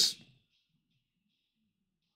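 The end of a man's spoken word, cut off in the first instant, then near silence: room tone.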